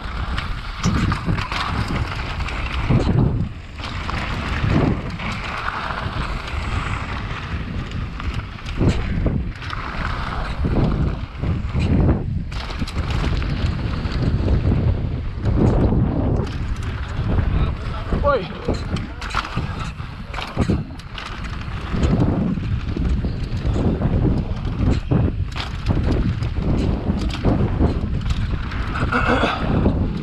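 Mountain bike ridden fast down a dry dirt track, heard from a helmet-mounted action camera: wind rushing over the microphone and tyres rumbling on loose dirt, with frequent irregular knocks and rattles of the bike over bumps.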